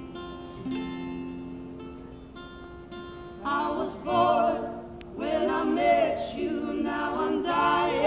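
Acoustic guitar picked alone, then from about three and a half seconds in, voices singing in harmony over it, louder than the guitar. The performance is unamplified and carries through a large theatre hall.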